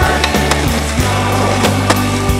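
Skateboard wheels rolling on concrete, with a sharp board pop or impact near the end as the skater goes up onto a ledge, under a rock music soundtrack.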